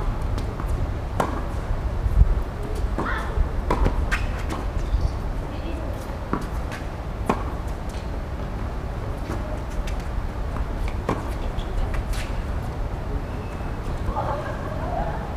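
Tennis balls struck by rackets and bouncing on a hard court during a doubles rally: sharp pops spaced a second or more apart, over a steady low rumble.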